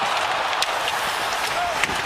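Hockey arena crowd noise: a steady wash of many voices, with a few faint knocks.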